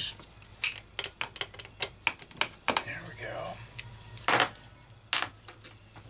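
Metal hand tool clicking and clinking irregularly against a chainsaw's engine parts while a fastener is worked loose, with two louder clacks about four and five seconds in.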